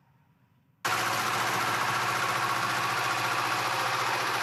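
Near silence, then about a second in, engine noise cuts in abruptly: a steady low hum of idling vehicle engines under an even rush of noise.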